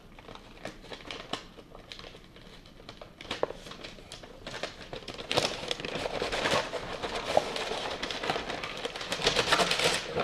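Stiff paper wrapping, not tissue, crinkling and rustling as it is unfolded and pulled out of a cardboard box. The first half has only light scattered handling clicks. From about halfway the crackling becomes dense and louder.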